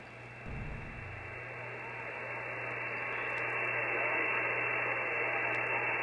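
Shortwave band noise from an HF transceiver on 20 m single-sideband with a 2.4 kHz filter: steady hiss with nobody transmitting, slowly getting louder. There is a brief low rumble about half a second in.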